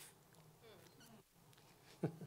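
Near silence: room tone, with a few faint, brief gliding tones near the middle.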